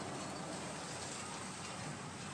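A car driving past on the road, its tyres making a steady hiss that eases off near the end.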